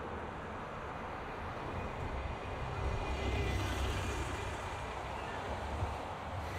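Street traffic with a double-decker bus passing close by: a low engine rumble that swells in the middle and fades off again.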